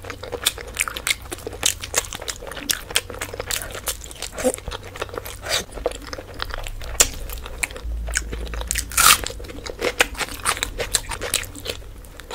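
Close-miked eating sounds of a mouthful of meat curry and rice: wet chewing and biting, with many sharp mouth clicks several times a second. The loudest, longer burst comes about nine seconds in.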